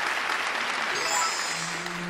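Studio audience applauding, with a short musical cue coming in about a second in.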